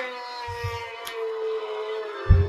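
A long, drawn-out wailing cry played by the joke website after its button is clicked; its pitch slides down and is then held steadily. Dull low thumps come about half a second in.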